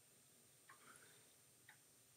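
Near silence: room tone with faint ticks about once a second.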